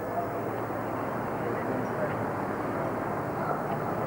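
Steady outdoor background noise from the course: an even rush at a constant level, with no distinct events.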